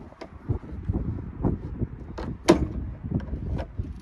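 A few separate clicks and knocks from the tailgate latch of a 1993 BMW E34 wagon being worked by hand, the sharpest about two and a half seconds in. The latch is sticking and will not catch, so the tailgate does not close.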